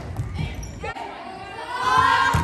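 Volleyball being hit in a gym: a sharp smack at the start as a jump serve is struck, and a softer ball contact about a second in, with players' voices ringing in the hall.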